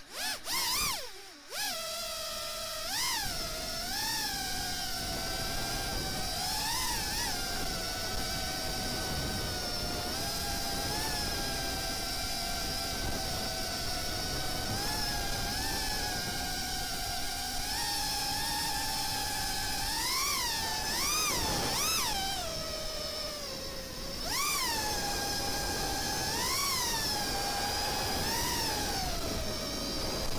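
FPV quadcopter's Cobra 2207 2300kv brushless motors and Ethix propellers whining in flight: a high buzzing whine that spins up sharply in the first second, then holds steady with repeated swoops up in pitch and back as the throttle is punched, several in quick succession in the last third.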